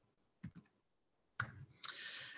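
Faint clicks of a computer mouse advancing a presentation slide: one about half a second in and a couple more near the end, with near silence between them.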